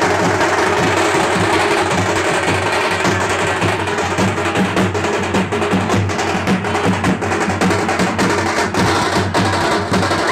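Live drums played in a fast, dense rhythm, loud and continuous.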